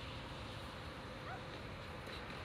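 Steady outdoor background noise beside a street, with a faint steady hum and one faint short rising chirp a little past the middle.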